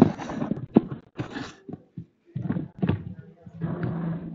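Indistinct, untranscribed talk close to the microphone, mixed with irregular knocks and rustles of the recording phone being handled.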